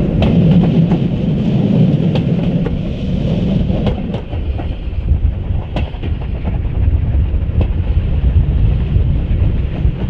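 Steam-hauled passenger train heard from an open carriage window: a steady rumble of wheels on the track, with scattered sharp clicks over rail joints. A deeper drone under it drops away about four seconds in, as the train comes off the brick viaduct.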